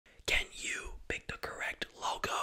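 A young man whispering close into a microphone, ASMR-style, with a few sharp clicks between words.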